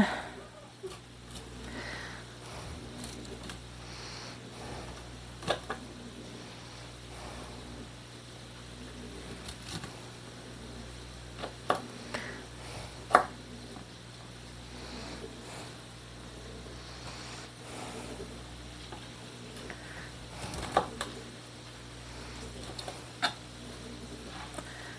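A knife cutting broccoli florets on a plastic cutting board: scattered sharp knocks of the blade on the board, the loudest about thirteen seconds in. Heavy breathing close to the microphone runs under it, over a steady low hum.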